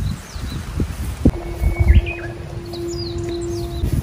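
Small birds chirp a few times around the middle, over rustling leaves and knocks from a hand handling leafy plum branches. A steady low hum runs through the second half.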